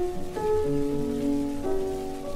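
Solo piano from a 1925 Victor 78 rpm record, a slow melody with new notes struck about a third of a second in and again near the end. The notes play over the steady surface hiss of the old disc.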